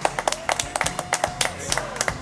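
A small group applauding with scattered, uneven hand claps. One steady note is held through the middle of the applause.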